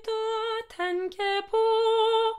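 A lone soprano voice singing the soprano part of a choral piece, unaccompanied: a held note, two short notes at other pitches, then the first pitch held again.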